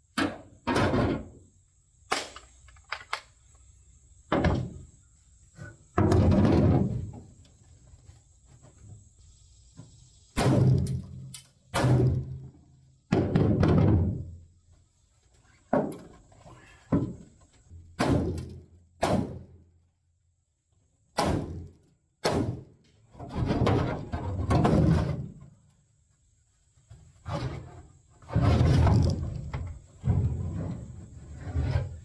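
An aluminum jon boat bench being knocked and wrenched loose from the hull: an irregular run of loud, hollow metal bangs and thunks, several ringing on for about a second.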